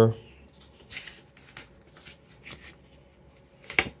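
Paper card and metal steelbook case being handled in the hands: a few short, faint rustles and rubs as the printed back card shifts against the case.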